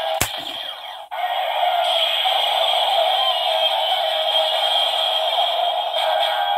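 Kyoryuger Gaburichanger transformation-gauntlet toy playing its transformation music and sound effects through its small built-in speaker, triggered by releasing the lever with a loaded battery piece. A sharp click comes just after the start, then the toy's electronic sound runs steadily, thin and without bass.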